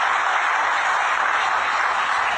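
Audience applauding steadily and loudly.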